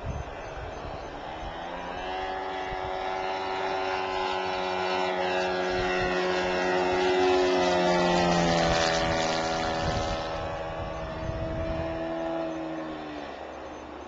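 Engine of a SeaGull Decathlon radio-controlled model plane flying past, growing louder to a peak about eight seconds in and then fading, its pitch dropping slightly as it moves away.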